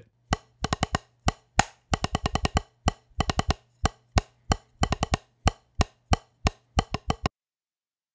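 Drumsticks tapping a practice pad in a snare-drum pattern: short, dry taps with quick clusters of light strokes between the accents, over a faint low hum. The playing stops about seven seconds in.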